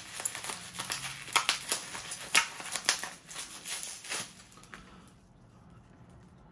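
Plastic snack packaging crinkling and rustling, with light irregular clicks and knocks, as items are handled over a cardboard box; it dies down about five seconds in.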